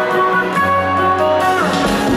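Electric guitar playing a melodic picked intro line through a live concert PA, notes ringing out with a few bends. A low bass note comes in about a third of the way through, and a low hit lands near the end.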